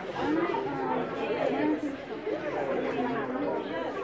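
Indistinct chatter of several people talking at once, close by.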